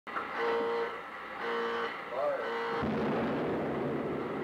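Intro sting: three short held pitched notes, then from about three seconds in a noisy low rumble that fades away.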